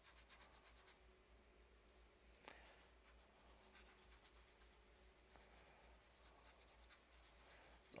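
Near silence with faint scratchy strokes of a paintbrush on the painting's surface, and one slightly louder tick about two and a half seconds in.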